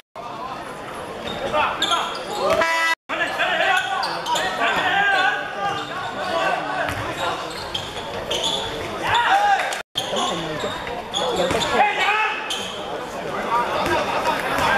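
Live sound of a basketball game in a large sports hall: the ball bouncing on the hardwood court amid players' shouts and calls. The sound drops out twice for an instant, about three and ten seconds in.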